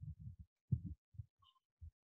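Faint, dull thuds of keyboard typing, about seven soft knocks spread over two seconds, picked up through a video-call microphone.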